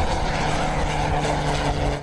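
Single-engine propeller airplane flying past overhead: a steady engine-and-propeller drone with a low, even hum.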